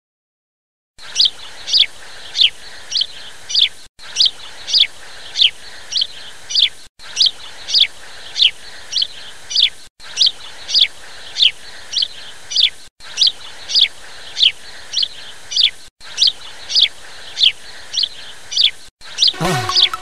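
Bird chirping: a run of sharp, falling chirps about two a second, starting about a second in, in a pattern that repeats every three seconds with a brief break between repeats.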